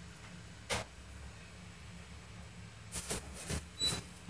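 A door being opened: faint latch clicks and knocks over a low room hum. There is one click about a second in and a quick run of clicks near the end.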